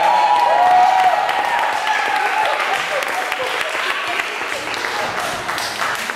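A roomful of children and adults applauding, with voices calling out over the clapping in the first couple of seconds; the applause slowly dies down toward the end.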